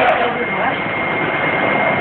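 Flat screen-printing machine running with a steady mechanical noise and a thin high whine. Voices talk over it for the first moment.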